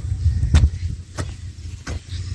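Short-handled hand hoe (kasola) chopping into dry, clumpy soil in steady strokes, about three in two seconds, breaking it up into a loose crumbly tilth. A steady low rumble runs underneath.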